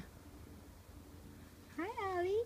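Four-week-old seal lynx point Himalayan kitten mewing. One short high mew falls away right at the start, and another rising-and-falling mew begins near the end.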